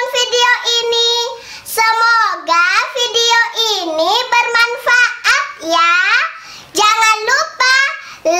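Young girls singing, their voices sliding up and down in pitch between a few held notes.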